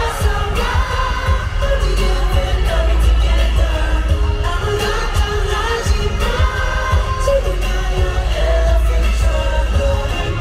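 K-pop song performed live in an arena through the loudspeakers: sung vocals over a heavy, steady bass beat, as heard from the audience.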